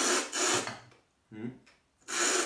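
A tea taster slurping and drawing air noisily through a mouthful of tea to aerate it while cupping: one long rasping suck at the start, then a short low throat sound.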